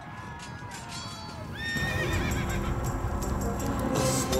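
A horse whinnies once, wavering, about two seconds in, as the intro music of a cartoon theme song suddenly grows louder.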